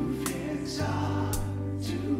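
Live worship music: a Yamaha MM8 stage keyboard holding sustained chords over a changing bass note, with a steady beat just under two a second, and singing.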